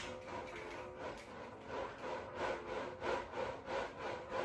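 Waist twisting disc turning back and forth under a person's feet, a rhythmic rasping rub with each twist, several strokes a second and stronger in the second half. Faint music plays underneath.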